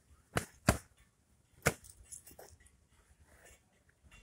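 Three sharp slaps of foam-padded LARP swords striking shields and bodies in a fast exchange: two hits close together, the second the loudest, and a third about a second later.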